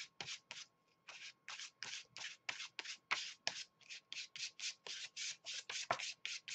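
Quick scrubbing strokes of a hand-held paint applicator rubbed back and forth across a sheet of paper, spreading paint, about three or four strokes a second.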